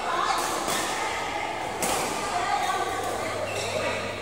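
Badminton rackets striking a shuttlecock during a rally: three sharp hits, about half a second in, shortly after, and just before the two-second mark. Players' voices ring in a large, echoing hall, with a steady low hum underneath.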